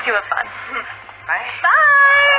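Trailer soundtrack: brief speech, then, about one and a half seconds in, a long high-pitched voiced cry that rises, holds and then slides down.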